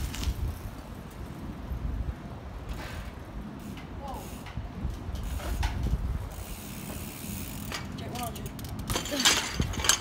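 Bicycle freewheel hub ticking as the rider coasts, over a low rumble, with a dense run of sharp clicks and knocks near the end.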